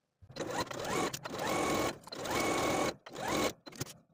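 Electric sewing machine stitching a seam in several short runs with brief pauses between, its motor whine rising in pitch each time it speeds up and then holding steady.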